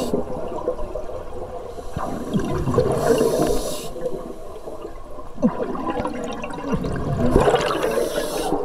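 Scuba breathing heard underwater through a regulator: a hissing inhale about two seconds in and again near the end, with gurgling exhale bubbles between.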